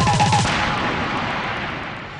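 A fast drum roll of rapid low hits lasting about half a second, ending in a crash that rings out and fades away over the next second and a half.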